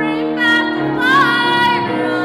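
Soprano singing with grand piano accompaniment, holding a long note with vibrato about a second in.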